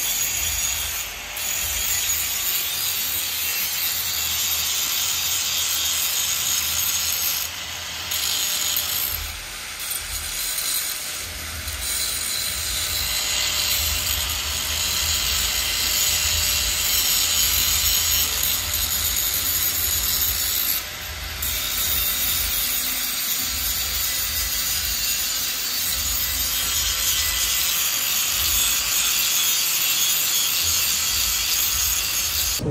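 Handheld electric angle grinder with its disc on a steel exhaust pipe, making a continuous high grinding screech with a faint motor whine. It eases off briefly a few times as the disc is lifted from the metal.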